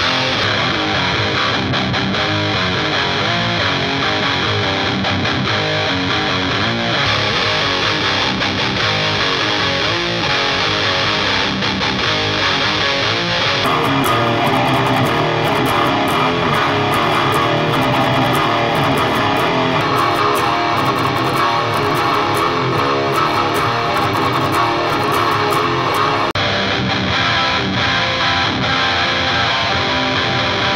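Distorted electric guitar playing a heavy metal riff through a Line 6 Vetta 2 head into a 2x12 cab loaded with two Celestion Vintage 30 speakers. About 14 seconds in the playing turns brighter and denser, and it changes back about 26 seconds in.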